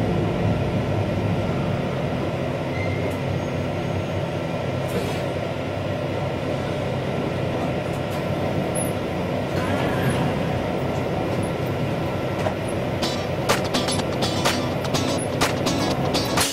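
Steady low hum inside an electric train standing at a station, with a few short clicks near the end.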